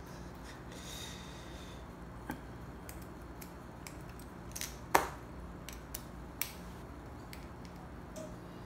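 A long hex key turning a small screw in an aluminium hydraulic valve block, with scattered light metallic clicks and ticks; the sharpest click comes about five seconds in.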